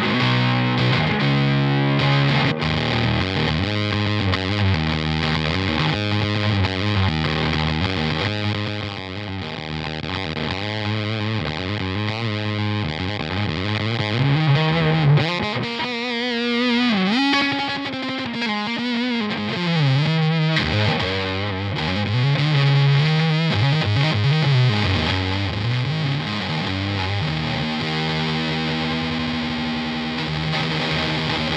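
Electric guitar played through a SolidGoldFX Agent 13 fuzz pedal: heavily distorted, fuzzy riffs and chords, with notes gliding in pitch through the middle stretch.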